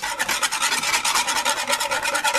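Wire whisk beating a cheese sauce in a non-stick saucepan, its wires scraping the bottom and sides of the pan in quick, regular strokes.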